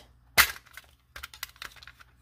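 Small metal watercolor palette tin being handled and opened: one sharp click about half a second in, then a few lighter clicks and taps.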